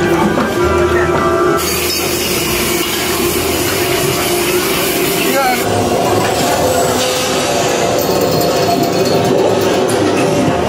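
Loud haunted-maze soundtrack: music and sound effects with voices mixed in. The sound changes abruptly about a second and a half in, and again about seven seconds in.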